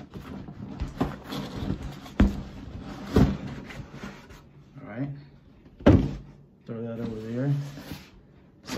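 A cardboard retail box being handled and turned over: rustling with a few hollow knocks and thumps, the loudest about six seconds in.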